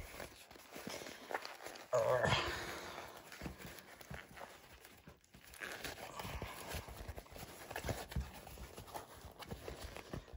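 Quiet rustling and crumpling of a sewn fabric bag as it is worked by hand through a small turning gap in its lining to turn it right side out. A short vocal sound comes about two seconds in.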